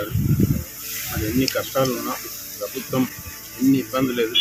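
A man speaking, over a steady background hiss.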